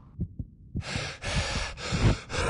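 Sound-design effect: a low, fast heartbeat-like pulse of thumps, about five a second, joined about three-quarters of a second in by a loud rushing hiss that breaks off briefly a few times.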